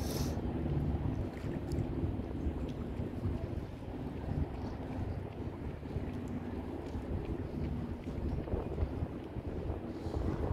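Wind rumbling on the microphone, rising and falling in gusts, with a faint low hum underneath.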